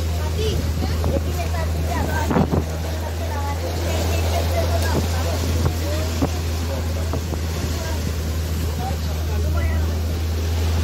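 A boat's engine droning steadily, with water rushing and splashing past the hull and wind buffeting the microphone.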